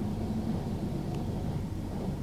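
Steady low rumble of a car engine idling, with a brief hum in the first half second and a faint click about a second in.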